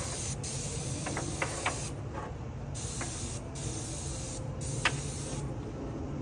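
Paint spray gun spraying black paint onto a masonry wall: a hiss that starts and stops in several bursts as the trigger is pulled and released. A steady low hum and a few short sharp ticks run underneath.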